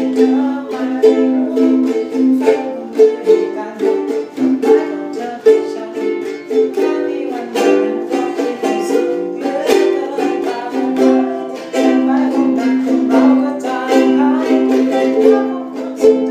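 Solo ukulele strummed in a steady rhythm of chords.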